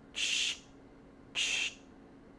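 Camera shutter sound effect for a slow shutter speed: two short hissy clicks about a second apart, the shutter opening and then closing.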